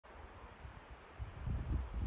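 Wind buffeting the microphone in uneven gusts, growing stronger about a second in, with a few faint high chirps near the end.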